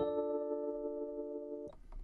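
Rhodes electric piano playing a melody: a note struck at the start and held about a second and a half before it stops.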